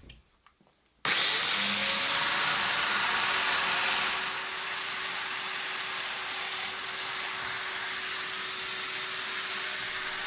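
Festool Domino slot mortiser starting up about a second in, its motor whine rising and settling into a steady run, together with the attached dust extractor. It is plunge-cutting notches in plywood, and the sound drops a little about four seconds in and then holds steady.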